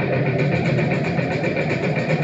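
A dense, steady amplified electronic drone played through a guitar amplifier, with a low hum underneath and a fast flutter in the upper range.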